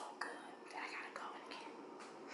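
Faint whispered, breathy voice sounds from a woman, with a few soft mouth clicks.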